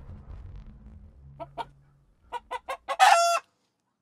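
A chicken sound effect for a production-company logo: four short clucks, then one short, loud, pitched call that cuts off suddenly, after the trailer music has died away.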